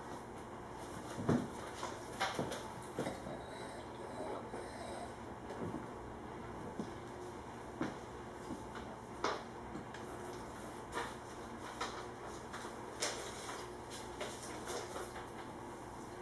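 A taster's sipping and mouth sounds as he draws white wine from a glass and works it around his mouth: a dozen or so short, soft slurps and smacks scattered over a faint steady room hum.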